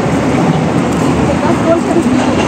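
A loud, steady rushing noise outdoors, with faint voices in the background.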